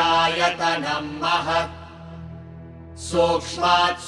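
Sanskrit verse of an Upanishad chanted in a melodic recitation. The voice stops for a breath just before two seconds in and takes up the next phrase about a second later. A steady low drone continues underneath throughout.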